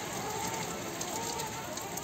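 Steady rain falling, a soft even hiss.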